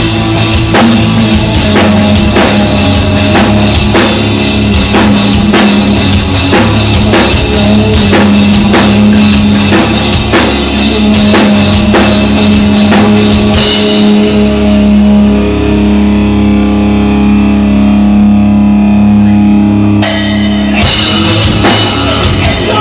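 Live rock jam on electric guitar and drum kit, played loud. About fourteen seconds in the drums drop out and the guitar holds sustained notes alone, and the drums crash back in about six seconds later.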